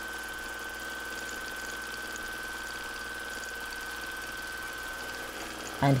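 Sewing machine running steadily during free-motion stitching: a continuous even hum with a thin high whine over it.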